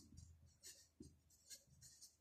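Felt-tip marker scratching on paper, a run of short faint strokes as a word is written.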